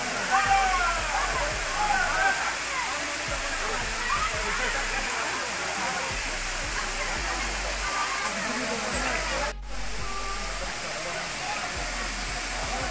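Steady rushing of a waterfall, with a crowd of people chattering over it. The sound drops out for a moment about nine and a half seconds in.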